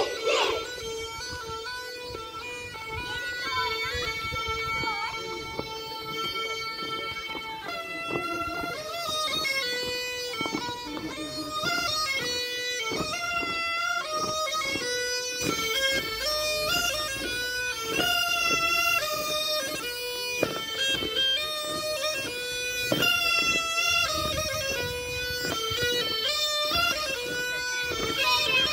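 Tulum, the Black Sea bagpipe, playing a horon dance tune. It holds one long note for about the first seven seconds, then breaks into a quick melody with rapidly changing notes.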